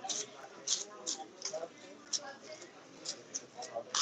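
Faint background voices, with short soft hissy sounds every half second or so.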